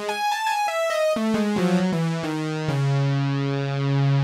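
Arturia CS-80 V4 software synthesizer playing a bright lead patch with its two oscillator channels blended: a high note, then a quick run of notes stepping downward, settling on a low note held through the last second or so.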